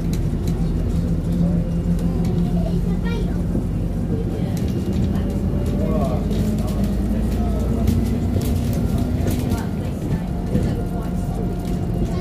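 Alexander Dennis Enviro400 diesel double-decker bus under way, heard from inside the lower deck: a steady engine and drivetrain drone whose pitch steps up about four seconds in and falls back near ten seconds, with light rattles from the interior.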